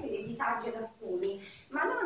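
Speech only: a woman talking in short phrases, with brief pauses about a second in.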